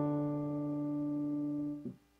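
Piano holding the closing octave D (D3 with D4 above) of a two-part harmonic dictation exercise, fading slowly, then released about 1.8 s in.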